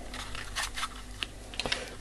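Light plastic clicks and taps at irregular moments as a small analog multimeter and its test leads are handled.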